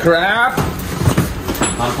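A man speaking a few words of Thai over a steady low background rumble, with a few short knocks in the middle.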